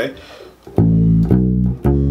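Electric bass guitar playing three low notes in a row, each held about half a second: the start of an A major scale (A, B, C sharp) fingered one-three-four on the lowest string.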